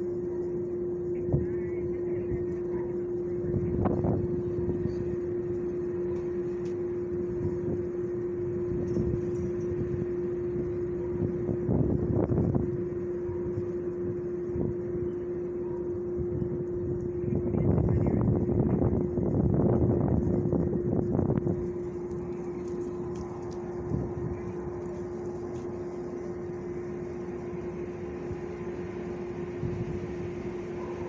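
A steady machine hum with one unchanging pitch, joined by louder noisy swells about four seconds in, around twelve seconds, and for several seconds just past the middle.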